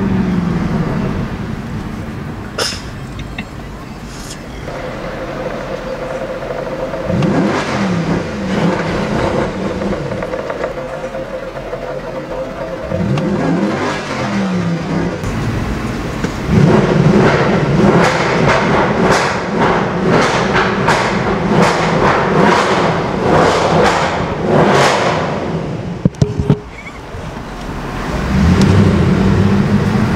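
Mercedes C63 AMG's 6.2-litre V8 heard from inside the cabin while being driven, revving up and easing off a few times. The loudest part is a hard, sustained run of revving in the second half that drops away suddenly near the end, then the engine climbs again.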